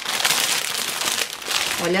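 Thin plastic packaging bag crinkling and rustling as a hard plastic toy suitcase is pulled out of it.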